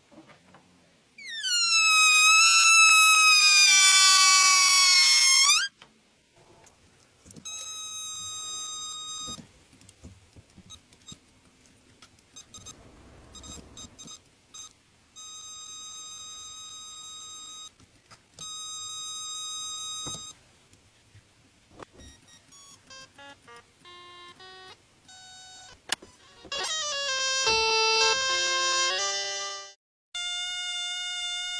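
Air squealing out through the stretched neck of an inflated rubber balloon: a loud, high whine that falls in pitch and then wavers for about four seconds. That squeal then comes back as a sampled instrument, first as three steady held tones and later as short notes stepping between pitches, ending in a louder run of falling notes.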